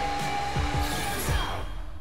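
Music from a children's TV promo: a held high note over a run of drum hits, ending abruptly right at the close.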